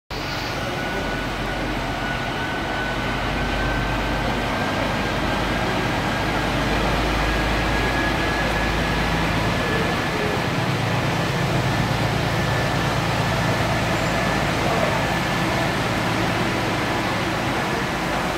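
Articulated lorry wading slowly through deep floodwater: a steady rush of surging, splashing water with the truck's diesel engine humming low underneath, the engine strongest in the middle as the truck passes close.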